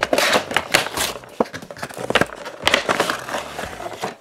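Clear plastic blister packaging of a toy box crinkling and crackling as it is opened and handled, with several louder snaps.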